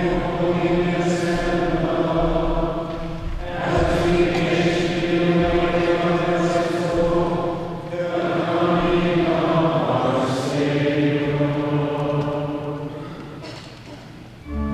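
Liturgical chant sung by a group of voices in a reverberant church, in three long held phrases with short breaks between them, fading out near the end.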